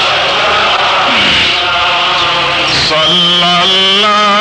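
Devotional Islamic chanting in long held vocal notes. Most of the passage is rough and less clearly pitched, and a steady held note comes back near the end.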